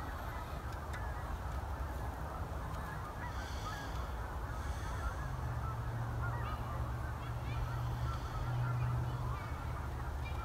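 Geese honking, many overlapping calls throughout. A low steady hum comes in about five seconds in and fades out near the end.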